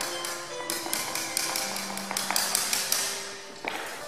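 Background music with held notes, over many sharp, irregular taps of a small hammer striking a craft box.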